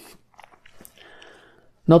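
Small mouth clicks and lip smacks with faint breathing from a man pausing between sentences; his speech starts again near the end.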